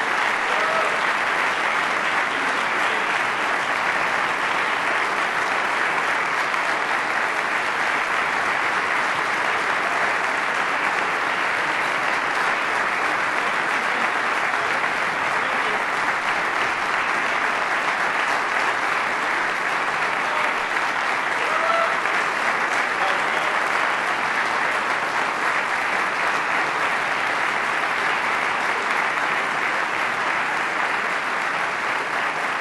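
Audience applauding in a long, steady round of clapping that neither builds nor fades.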